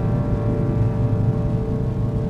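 Orchestral film score holding a sustained chord over a low rumble.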